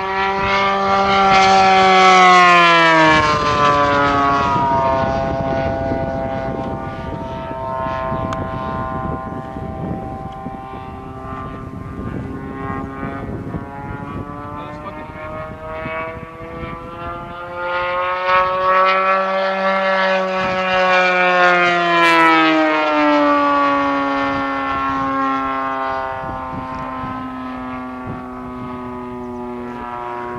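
The MT-57 engine of a large radio-control P-51 Mustang model, turning a 21.5 x 10 carbon-fibre propeller, running steadily in flight through loops. Its pitch and loudness rise and fall as the plane circles, with two close passes, in the first few seconds and again around twenty seconds in, each ending in a falling pitch.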